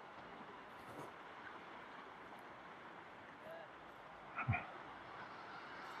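Faint, steady outdoor hiss of the shore by calm sea, broken once about four and a half seconds in by one short, low sound.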